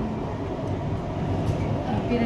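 Steady low rumble of an MRT train running along its track between stations, heard from inside the carriage.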